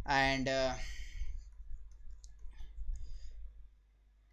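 A man's voice holds a short drawn-out sound at the start, then a few faint scattered clicks follow over a low steady hum.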